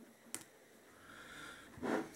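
A single quiet snip of fly-tying scissors cutting the marabou feather's stem off at the tie-in, followed by faint breathing and a louder breath near the end.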